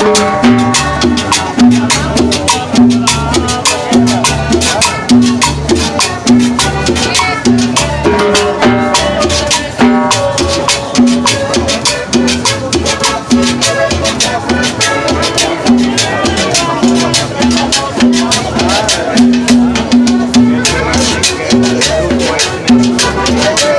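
Live band playing Latin dance music up close, with accordion and a plucked stringed instrument over a steady percussion beat and a repeating bass line.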